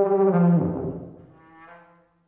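A tuba holding a loud, steady note that, about half a second in, slides downward and breaks up into a smeared, lower sound, then fades away over the next second.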